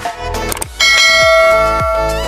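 Background music with a steady beat, and a bright bell chime that rings out suddenly a little under a second in and holds, fading slowly. The chime is the notification-bell sound effect of a subscribe-button animation.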